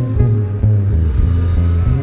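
Live jazz-fusion ensemble improvising, carried by deep, long-held bass notes with scattered drum hits over them.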